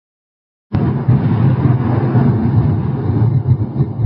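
Deep rumbling intro sound effect that starts suddenly after about three-quarters of a second of silence and keeps going at a steady level, low and rough in texture.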